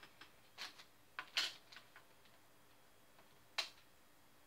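A handful of faint clicks and short rustles as hands handle small plastic pregnancy tests and a plastic bag, the loudest rustle about a second and a half in and a sharp click near the end.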